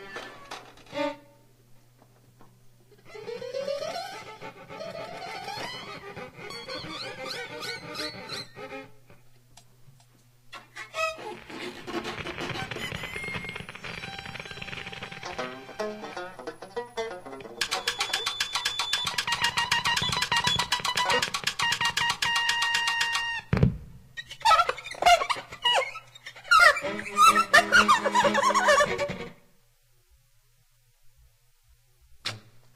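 Free-improvised small-ensemble music of guitars, bowed strings and reeds, played in short stop-start bursts with brief silences between. Near the start there are rising sliding pitches. In the middle comes a dense passage of fast repeated pulses, cut off by a sudden low thump, then a few scattered bursts before the playing stops shortly before the end.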